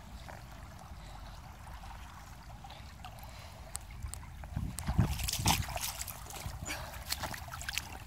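Shallow creek water trickling, then a few seconds of splashing, thumps and sharp knocks about halfway through as someone moves about in the water.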